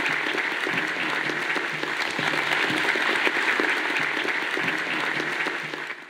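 Audience applauding steadily in a lecture hall, fading out at the very end.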